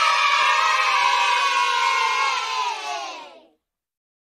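A group of children cheering together, many voices at once, drifting slightly down in pitch and stopping about three and a half seconds in.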